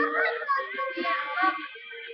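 A high-pitched young voice singing a wavering melody close to the microphone, with a held note about a second in, fading near the end.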